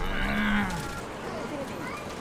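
A man's drawn-out "mmm" of enjoyment while eating, lasting under a second, its pitch rising a little and then falling.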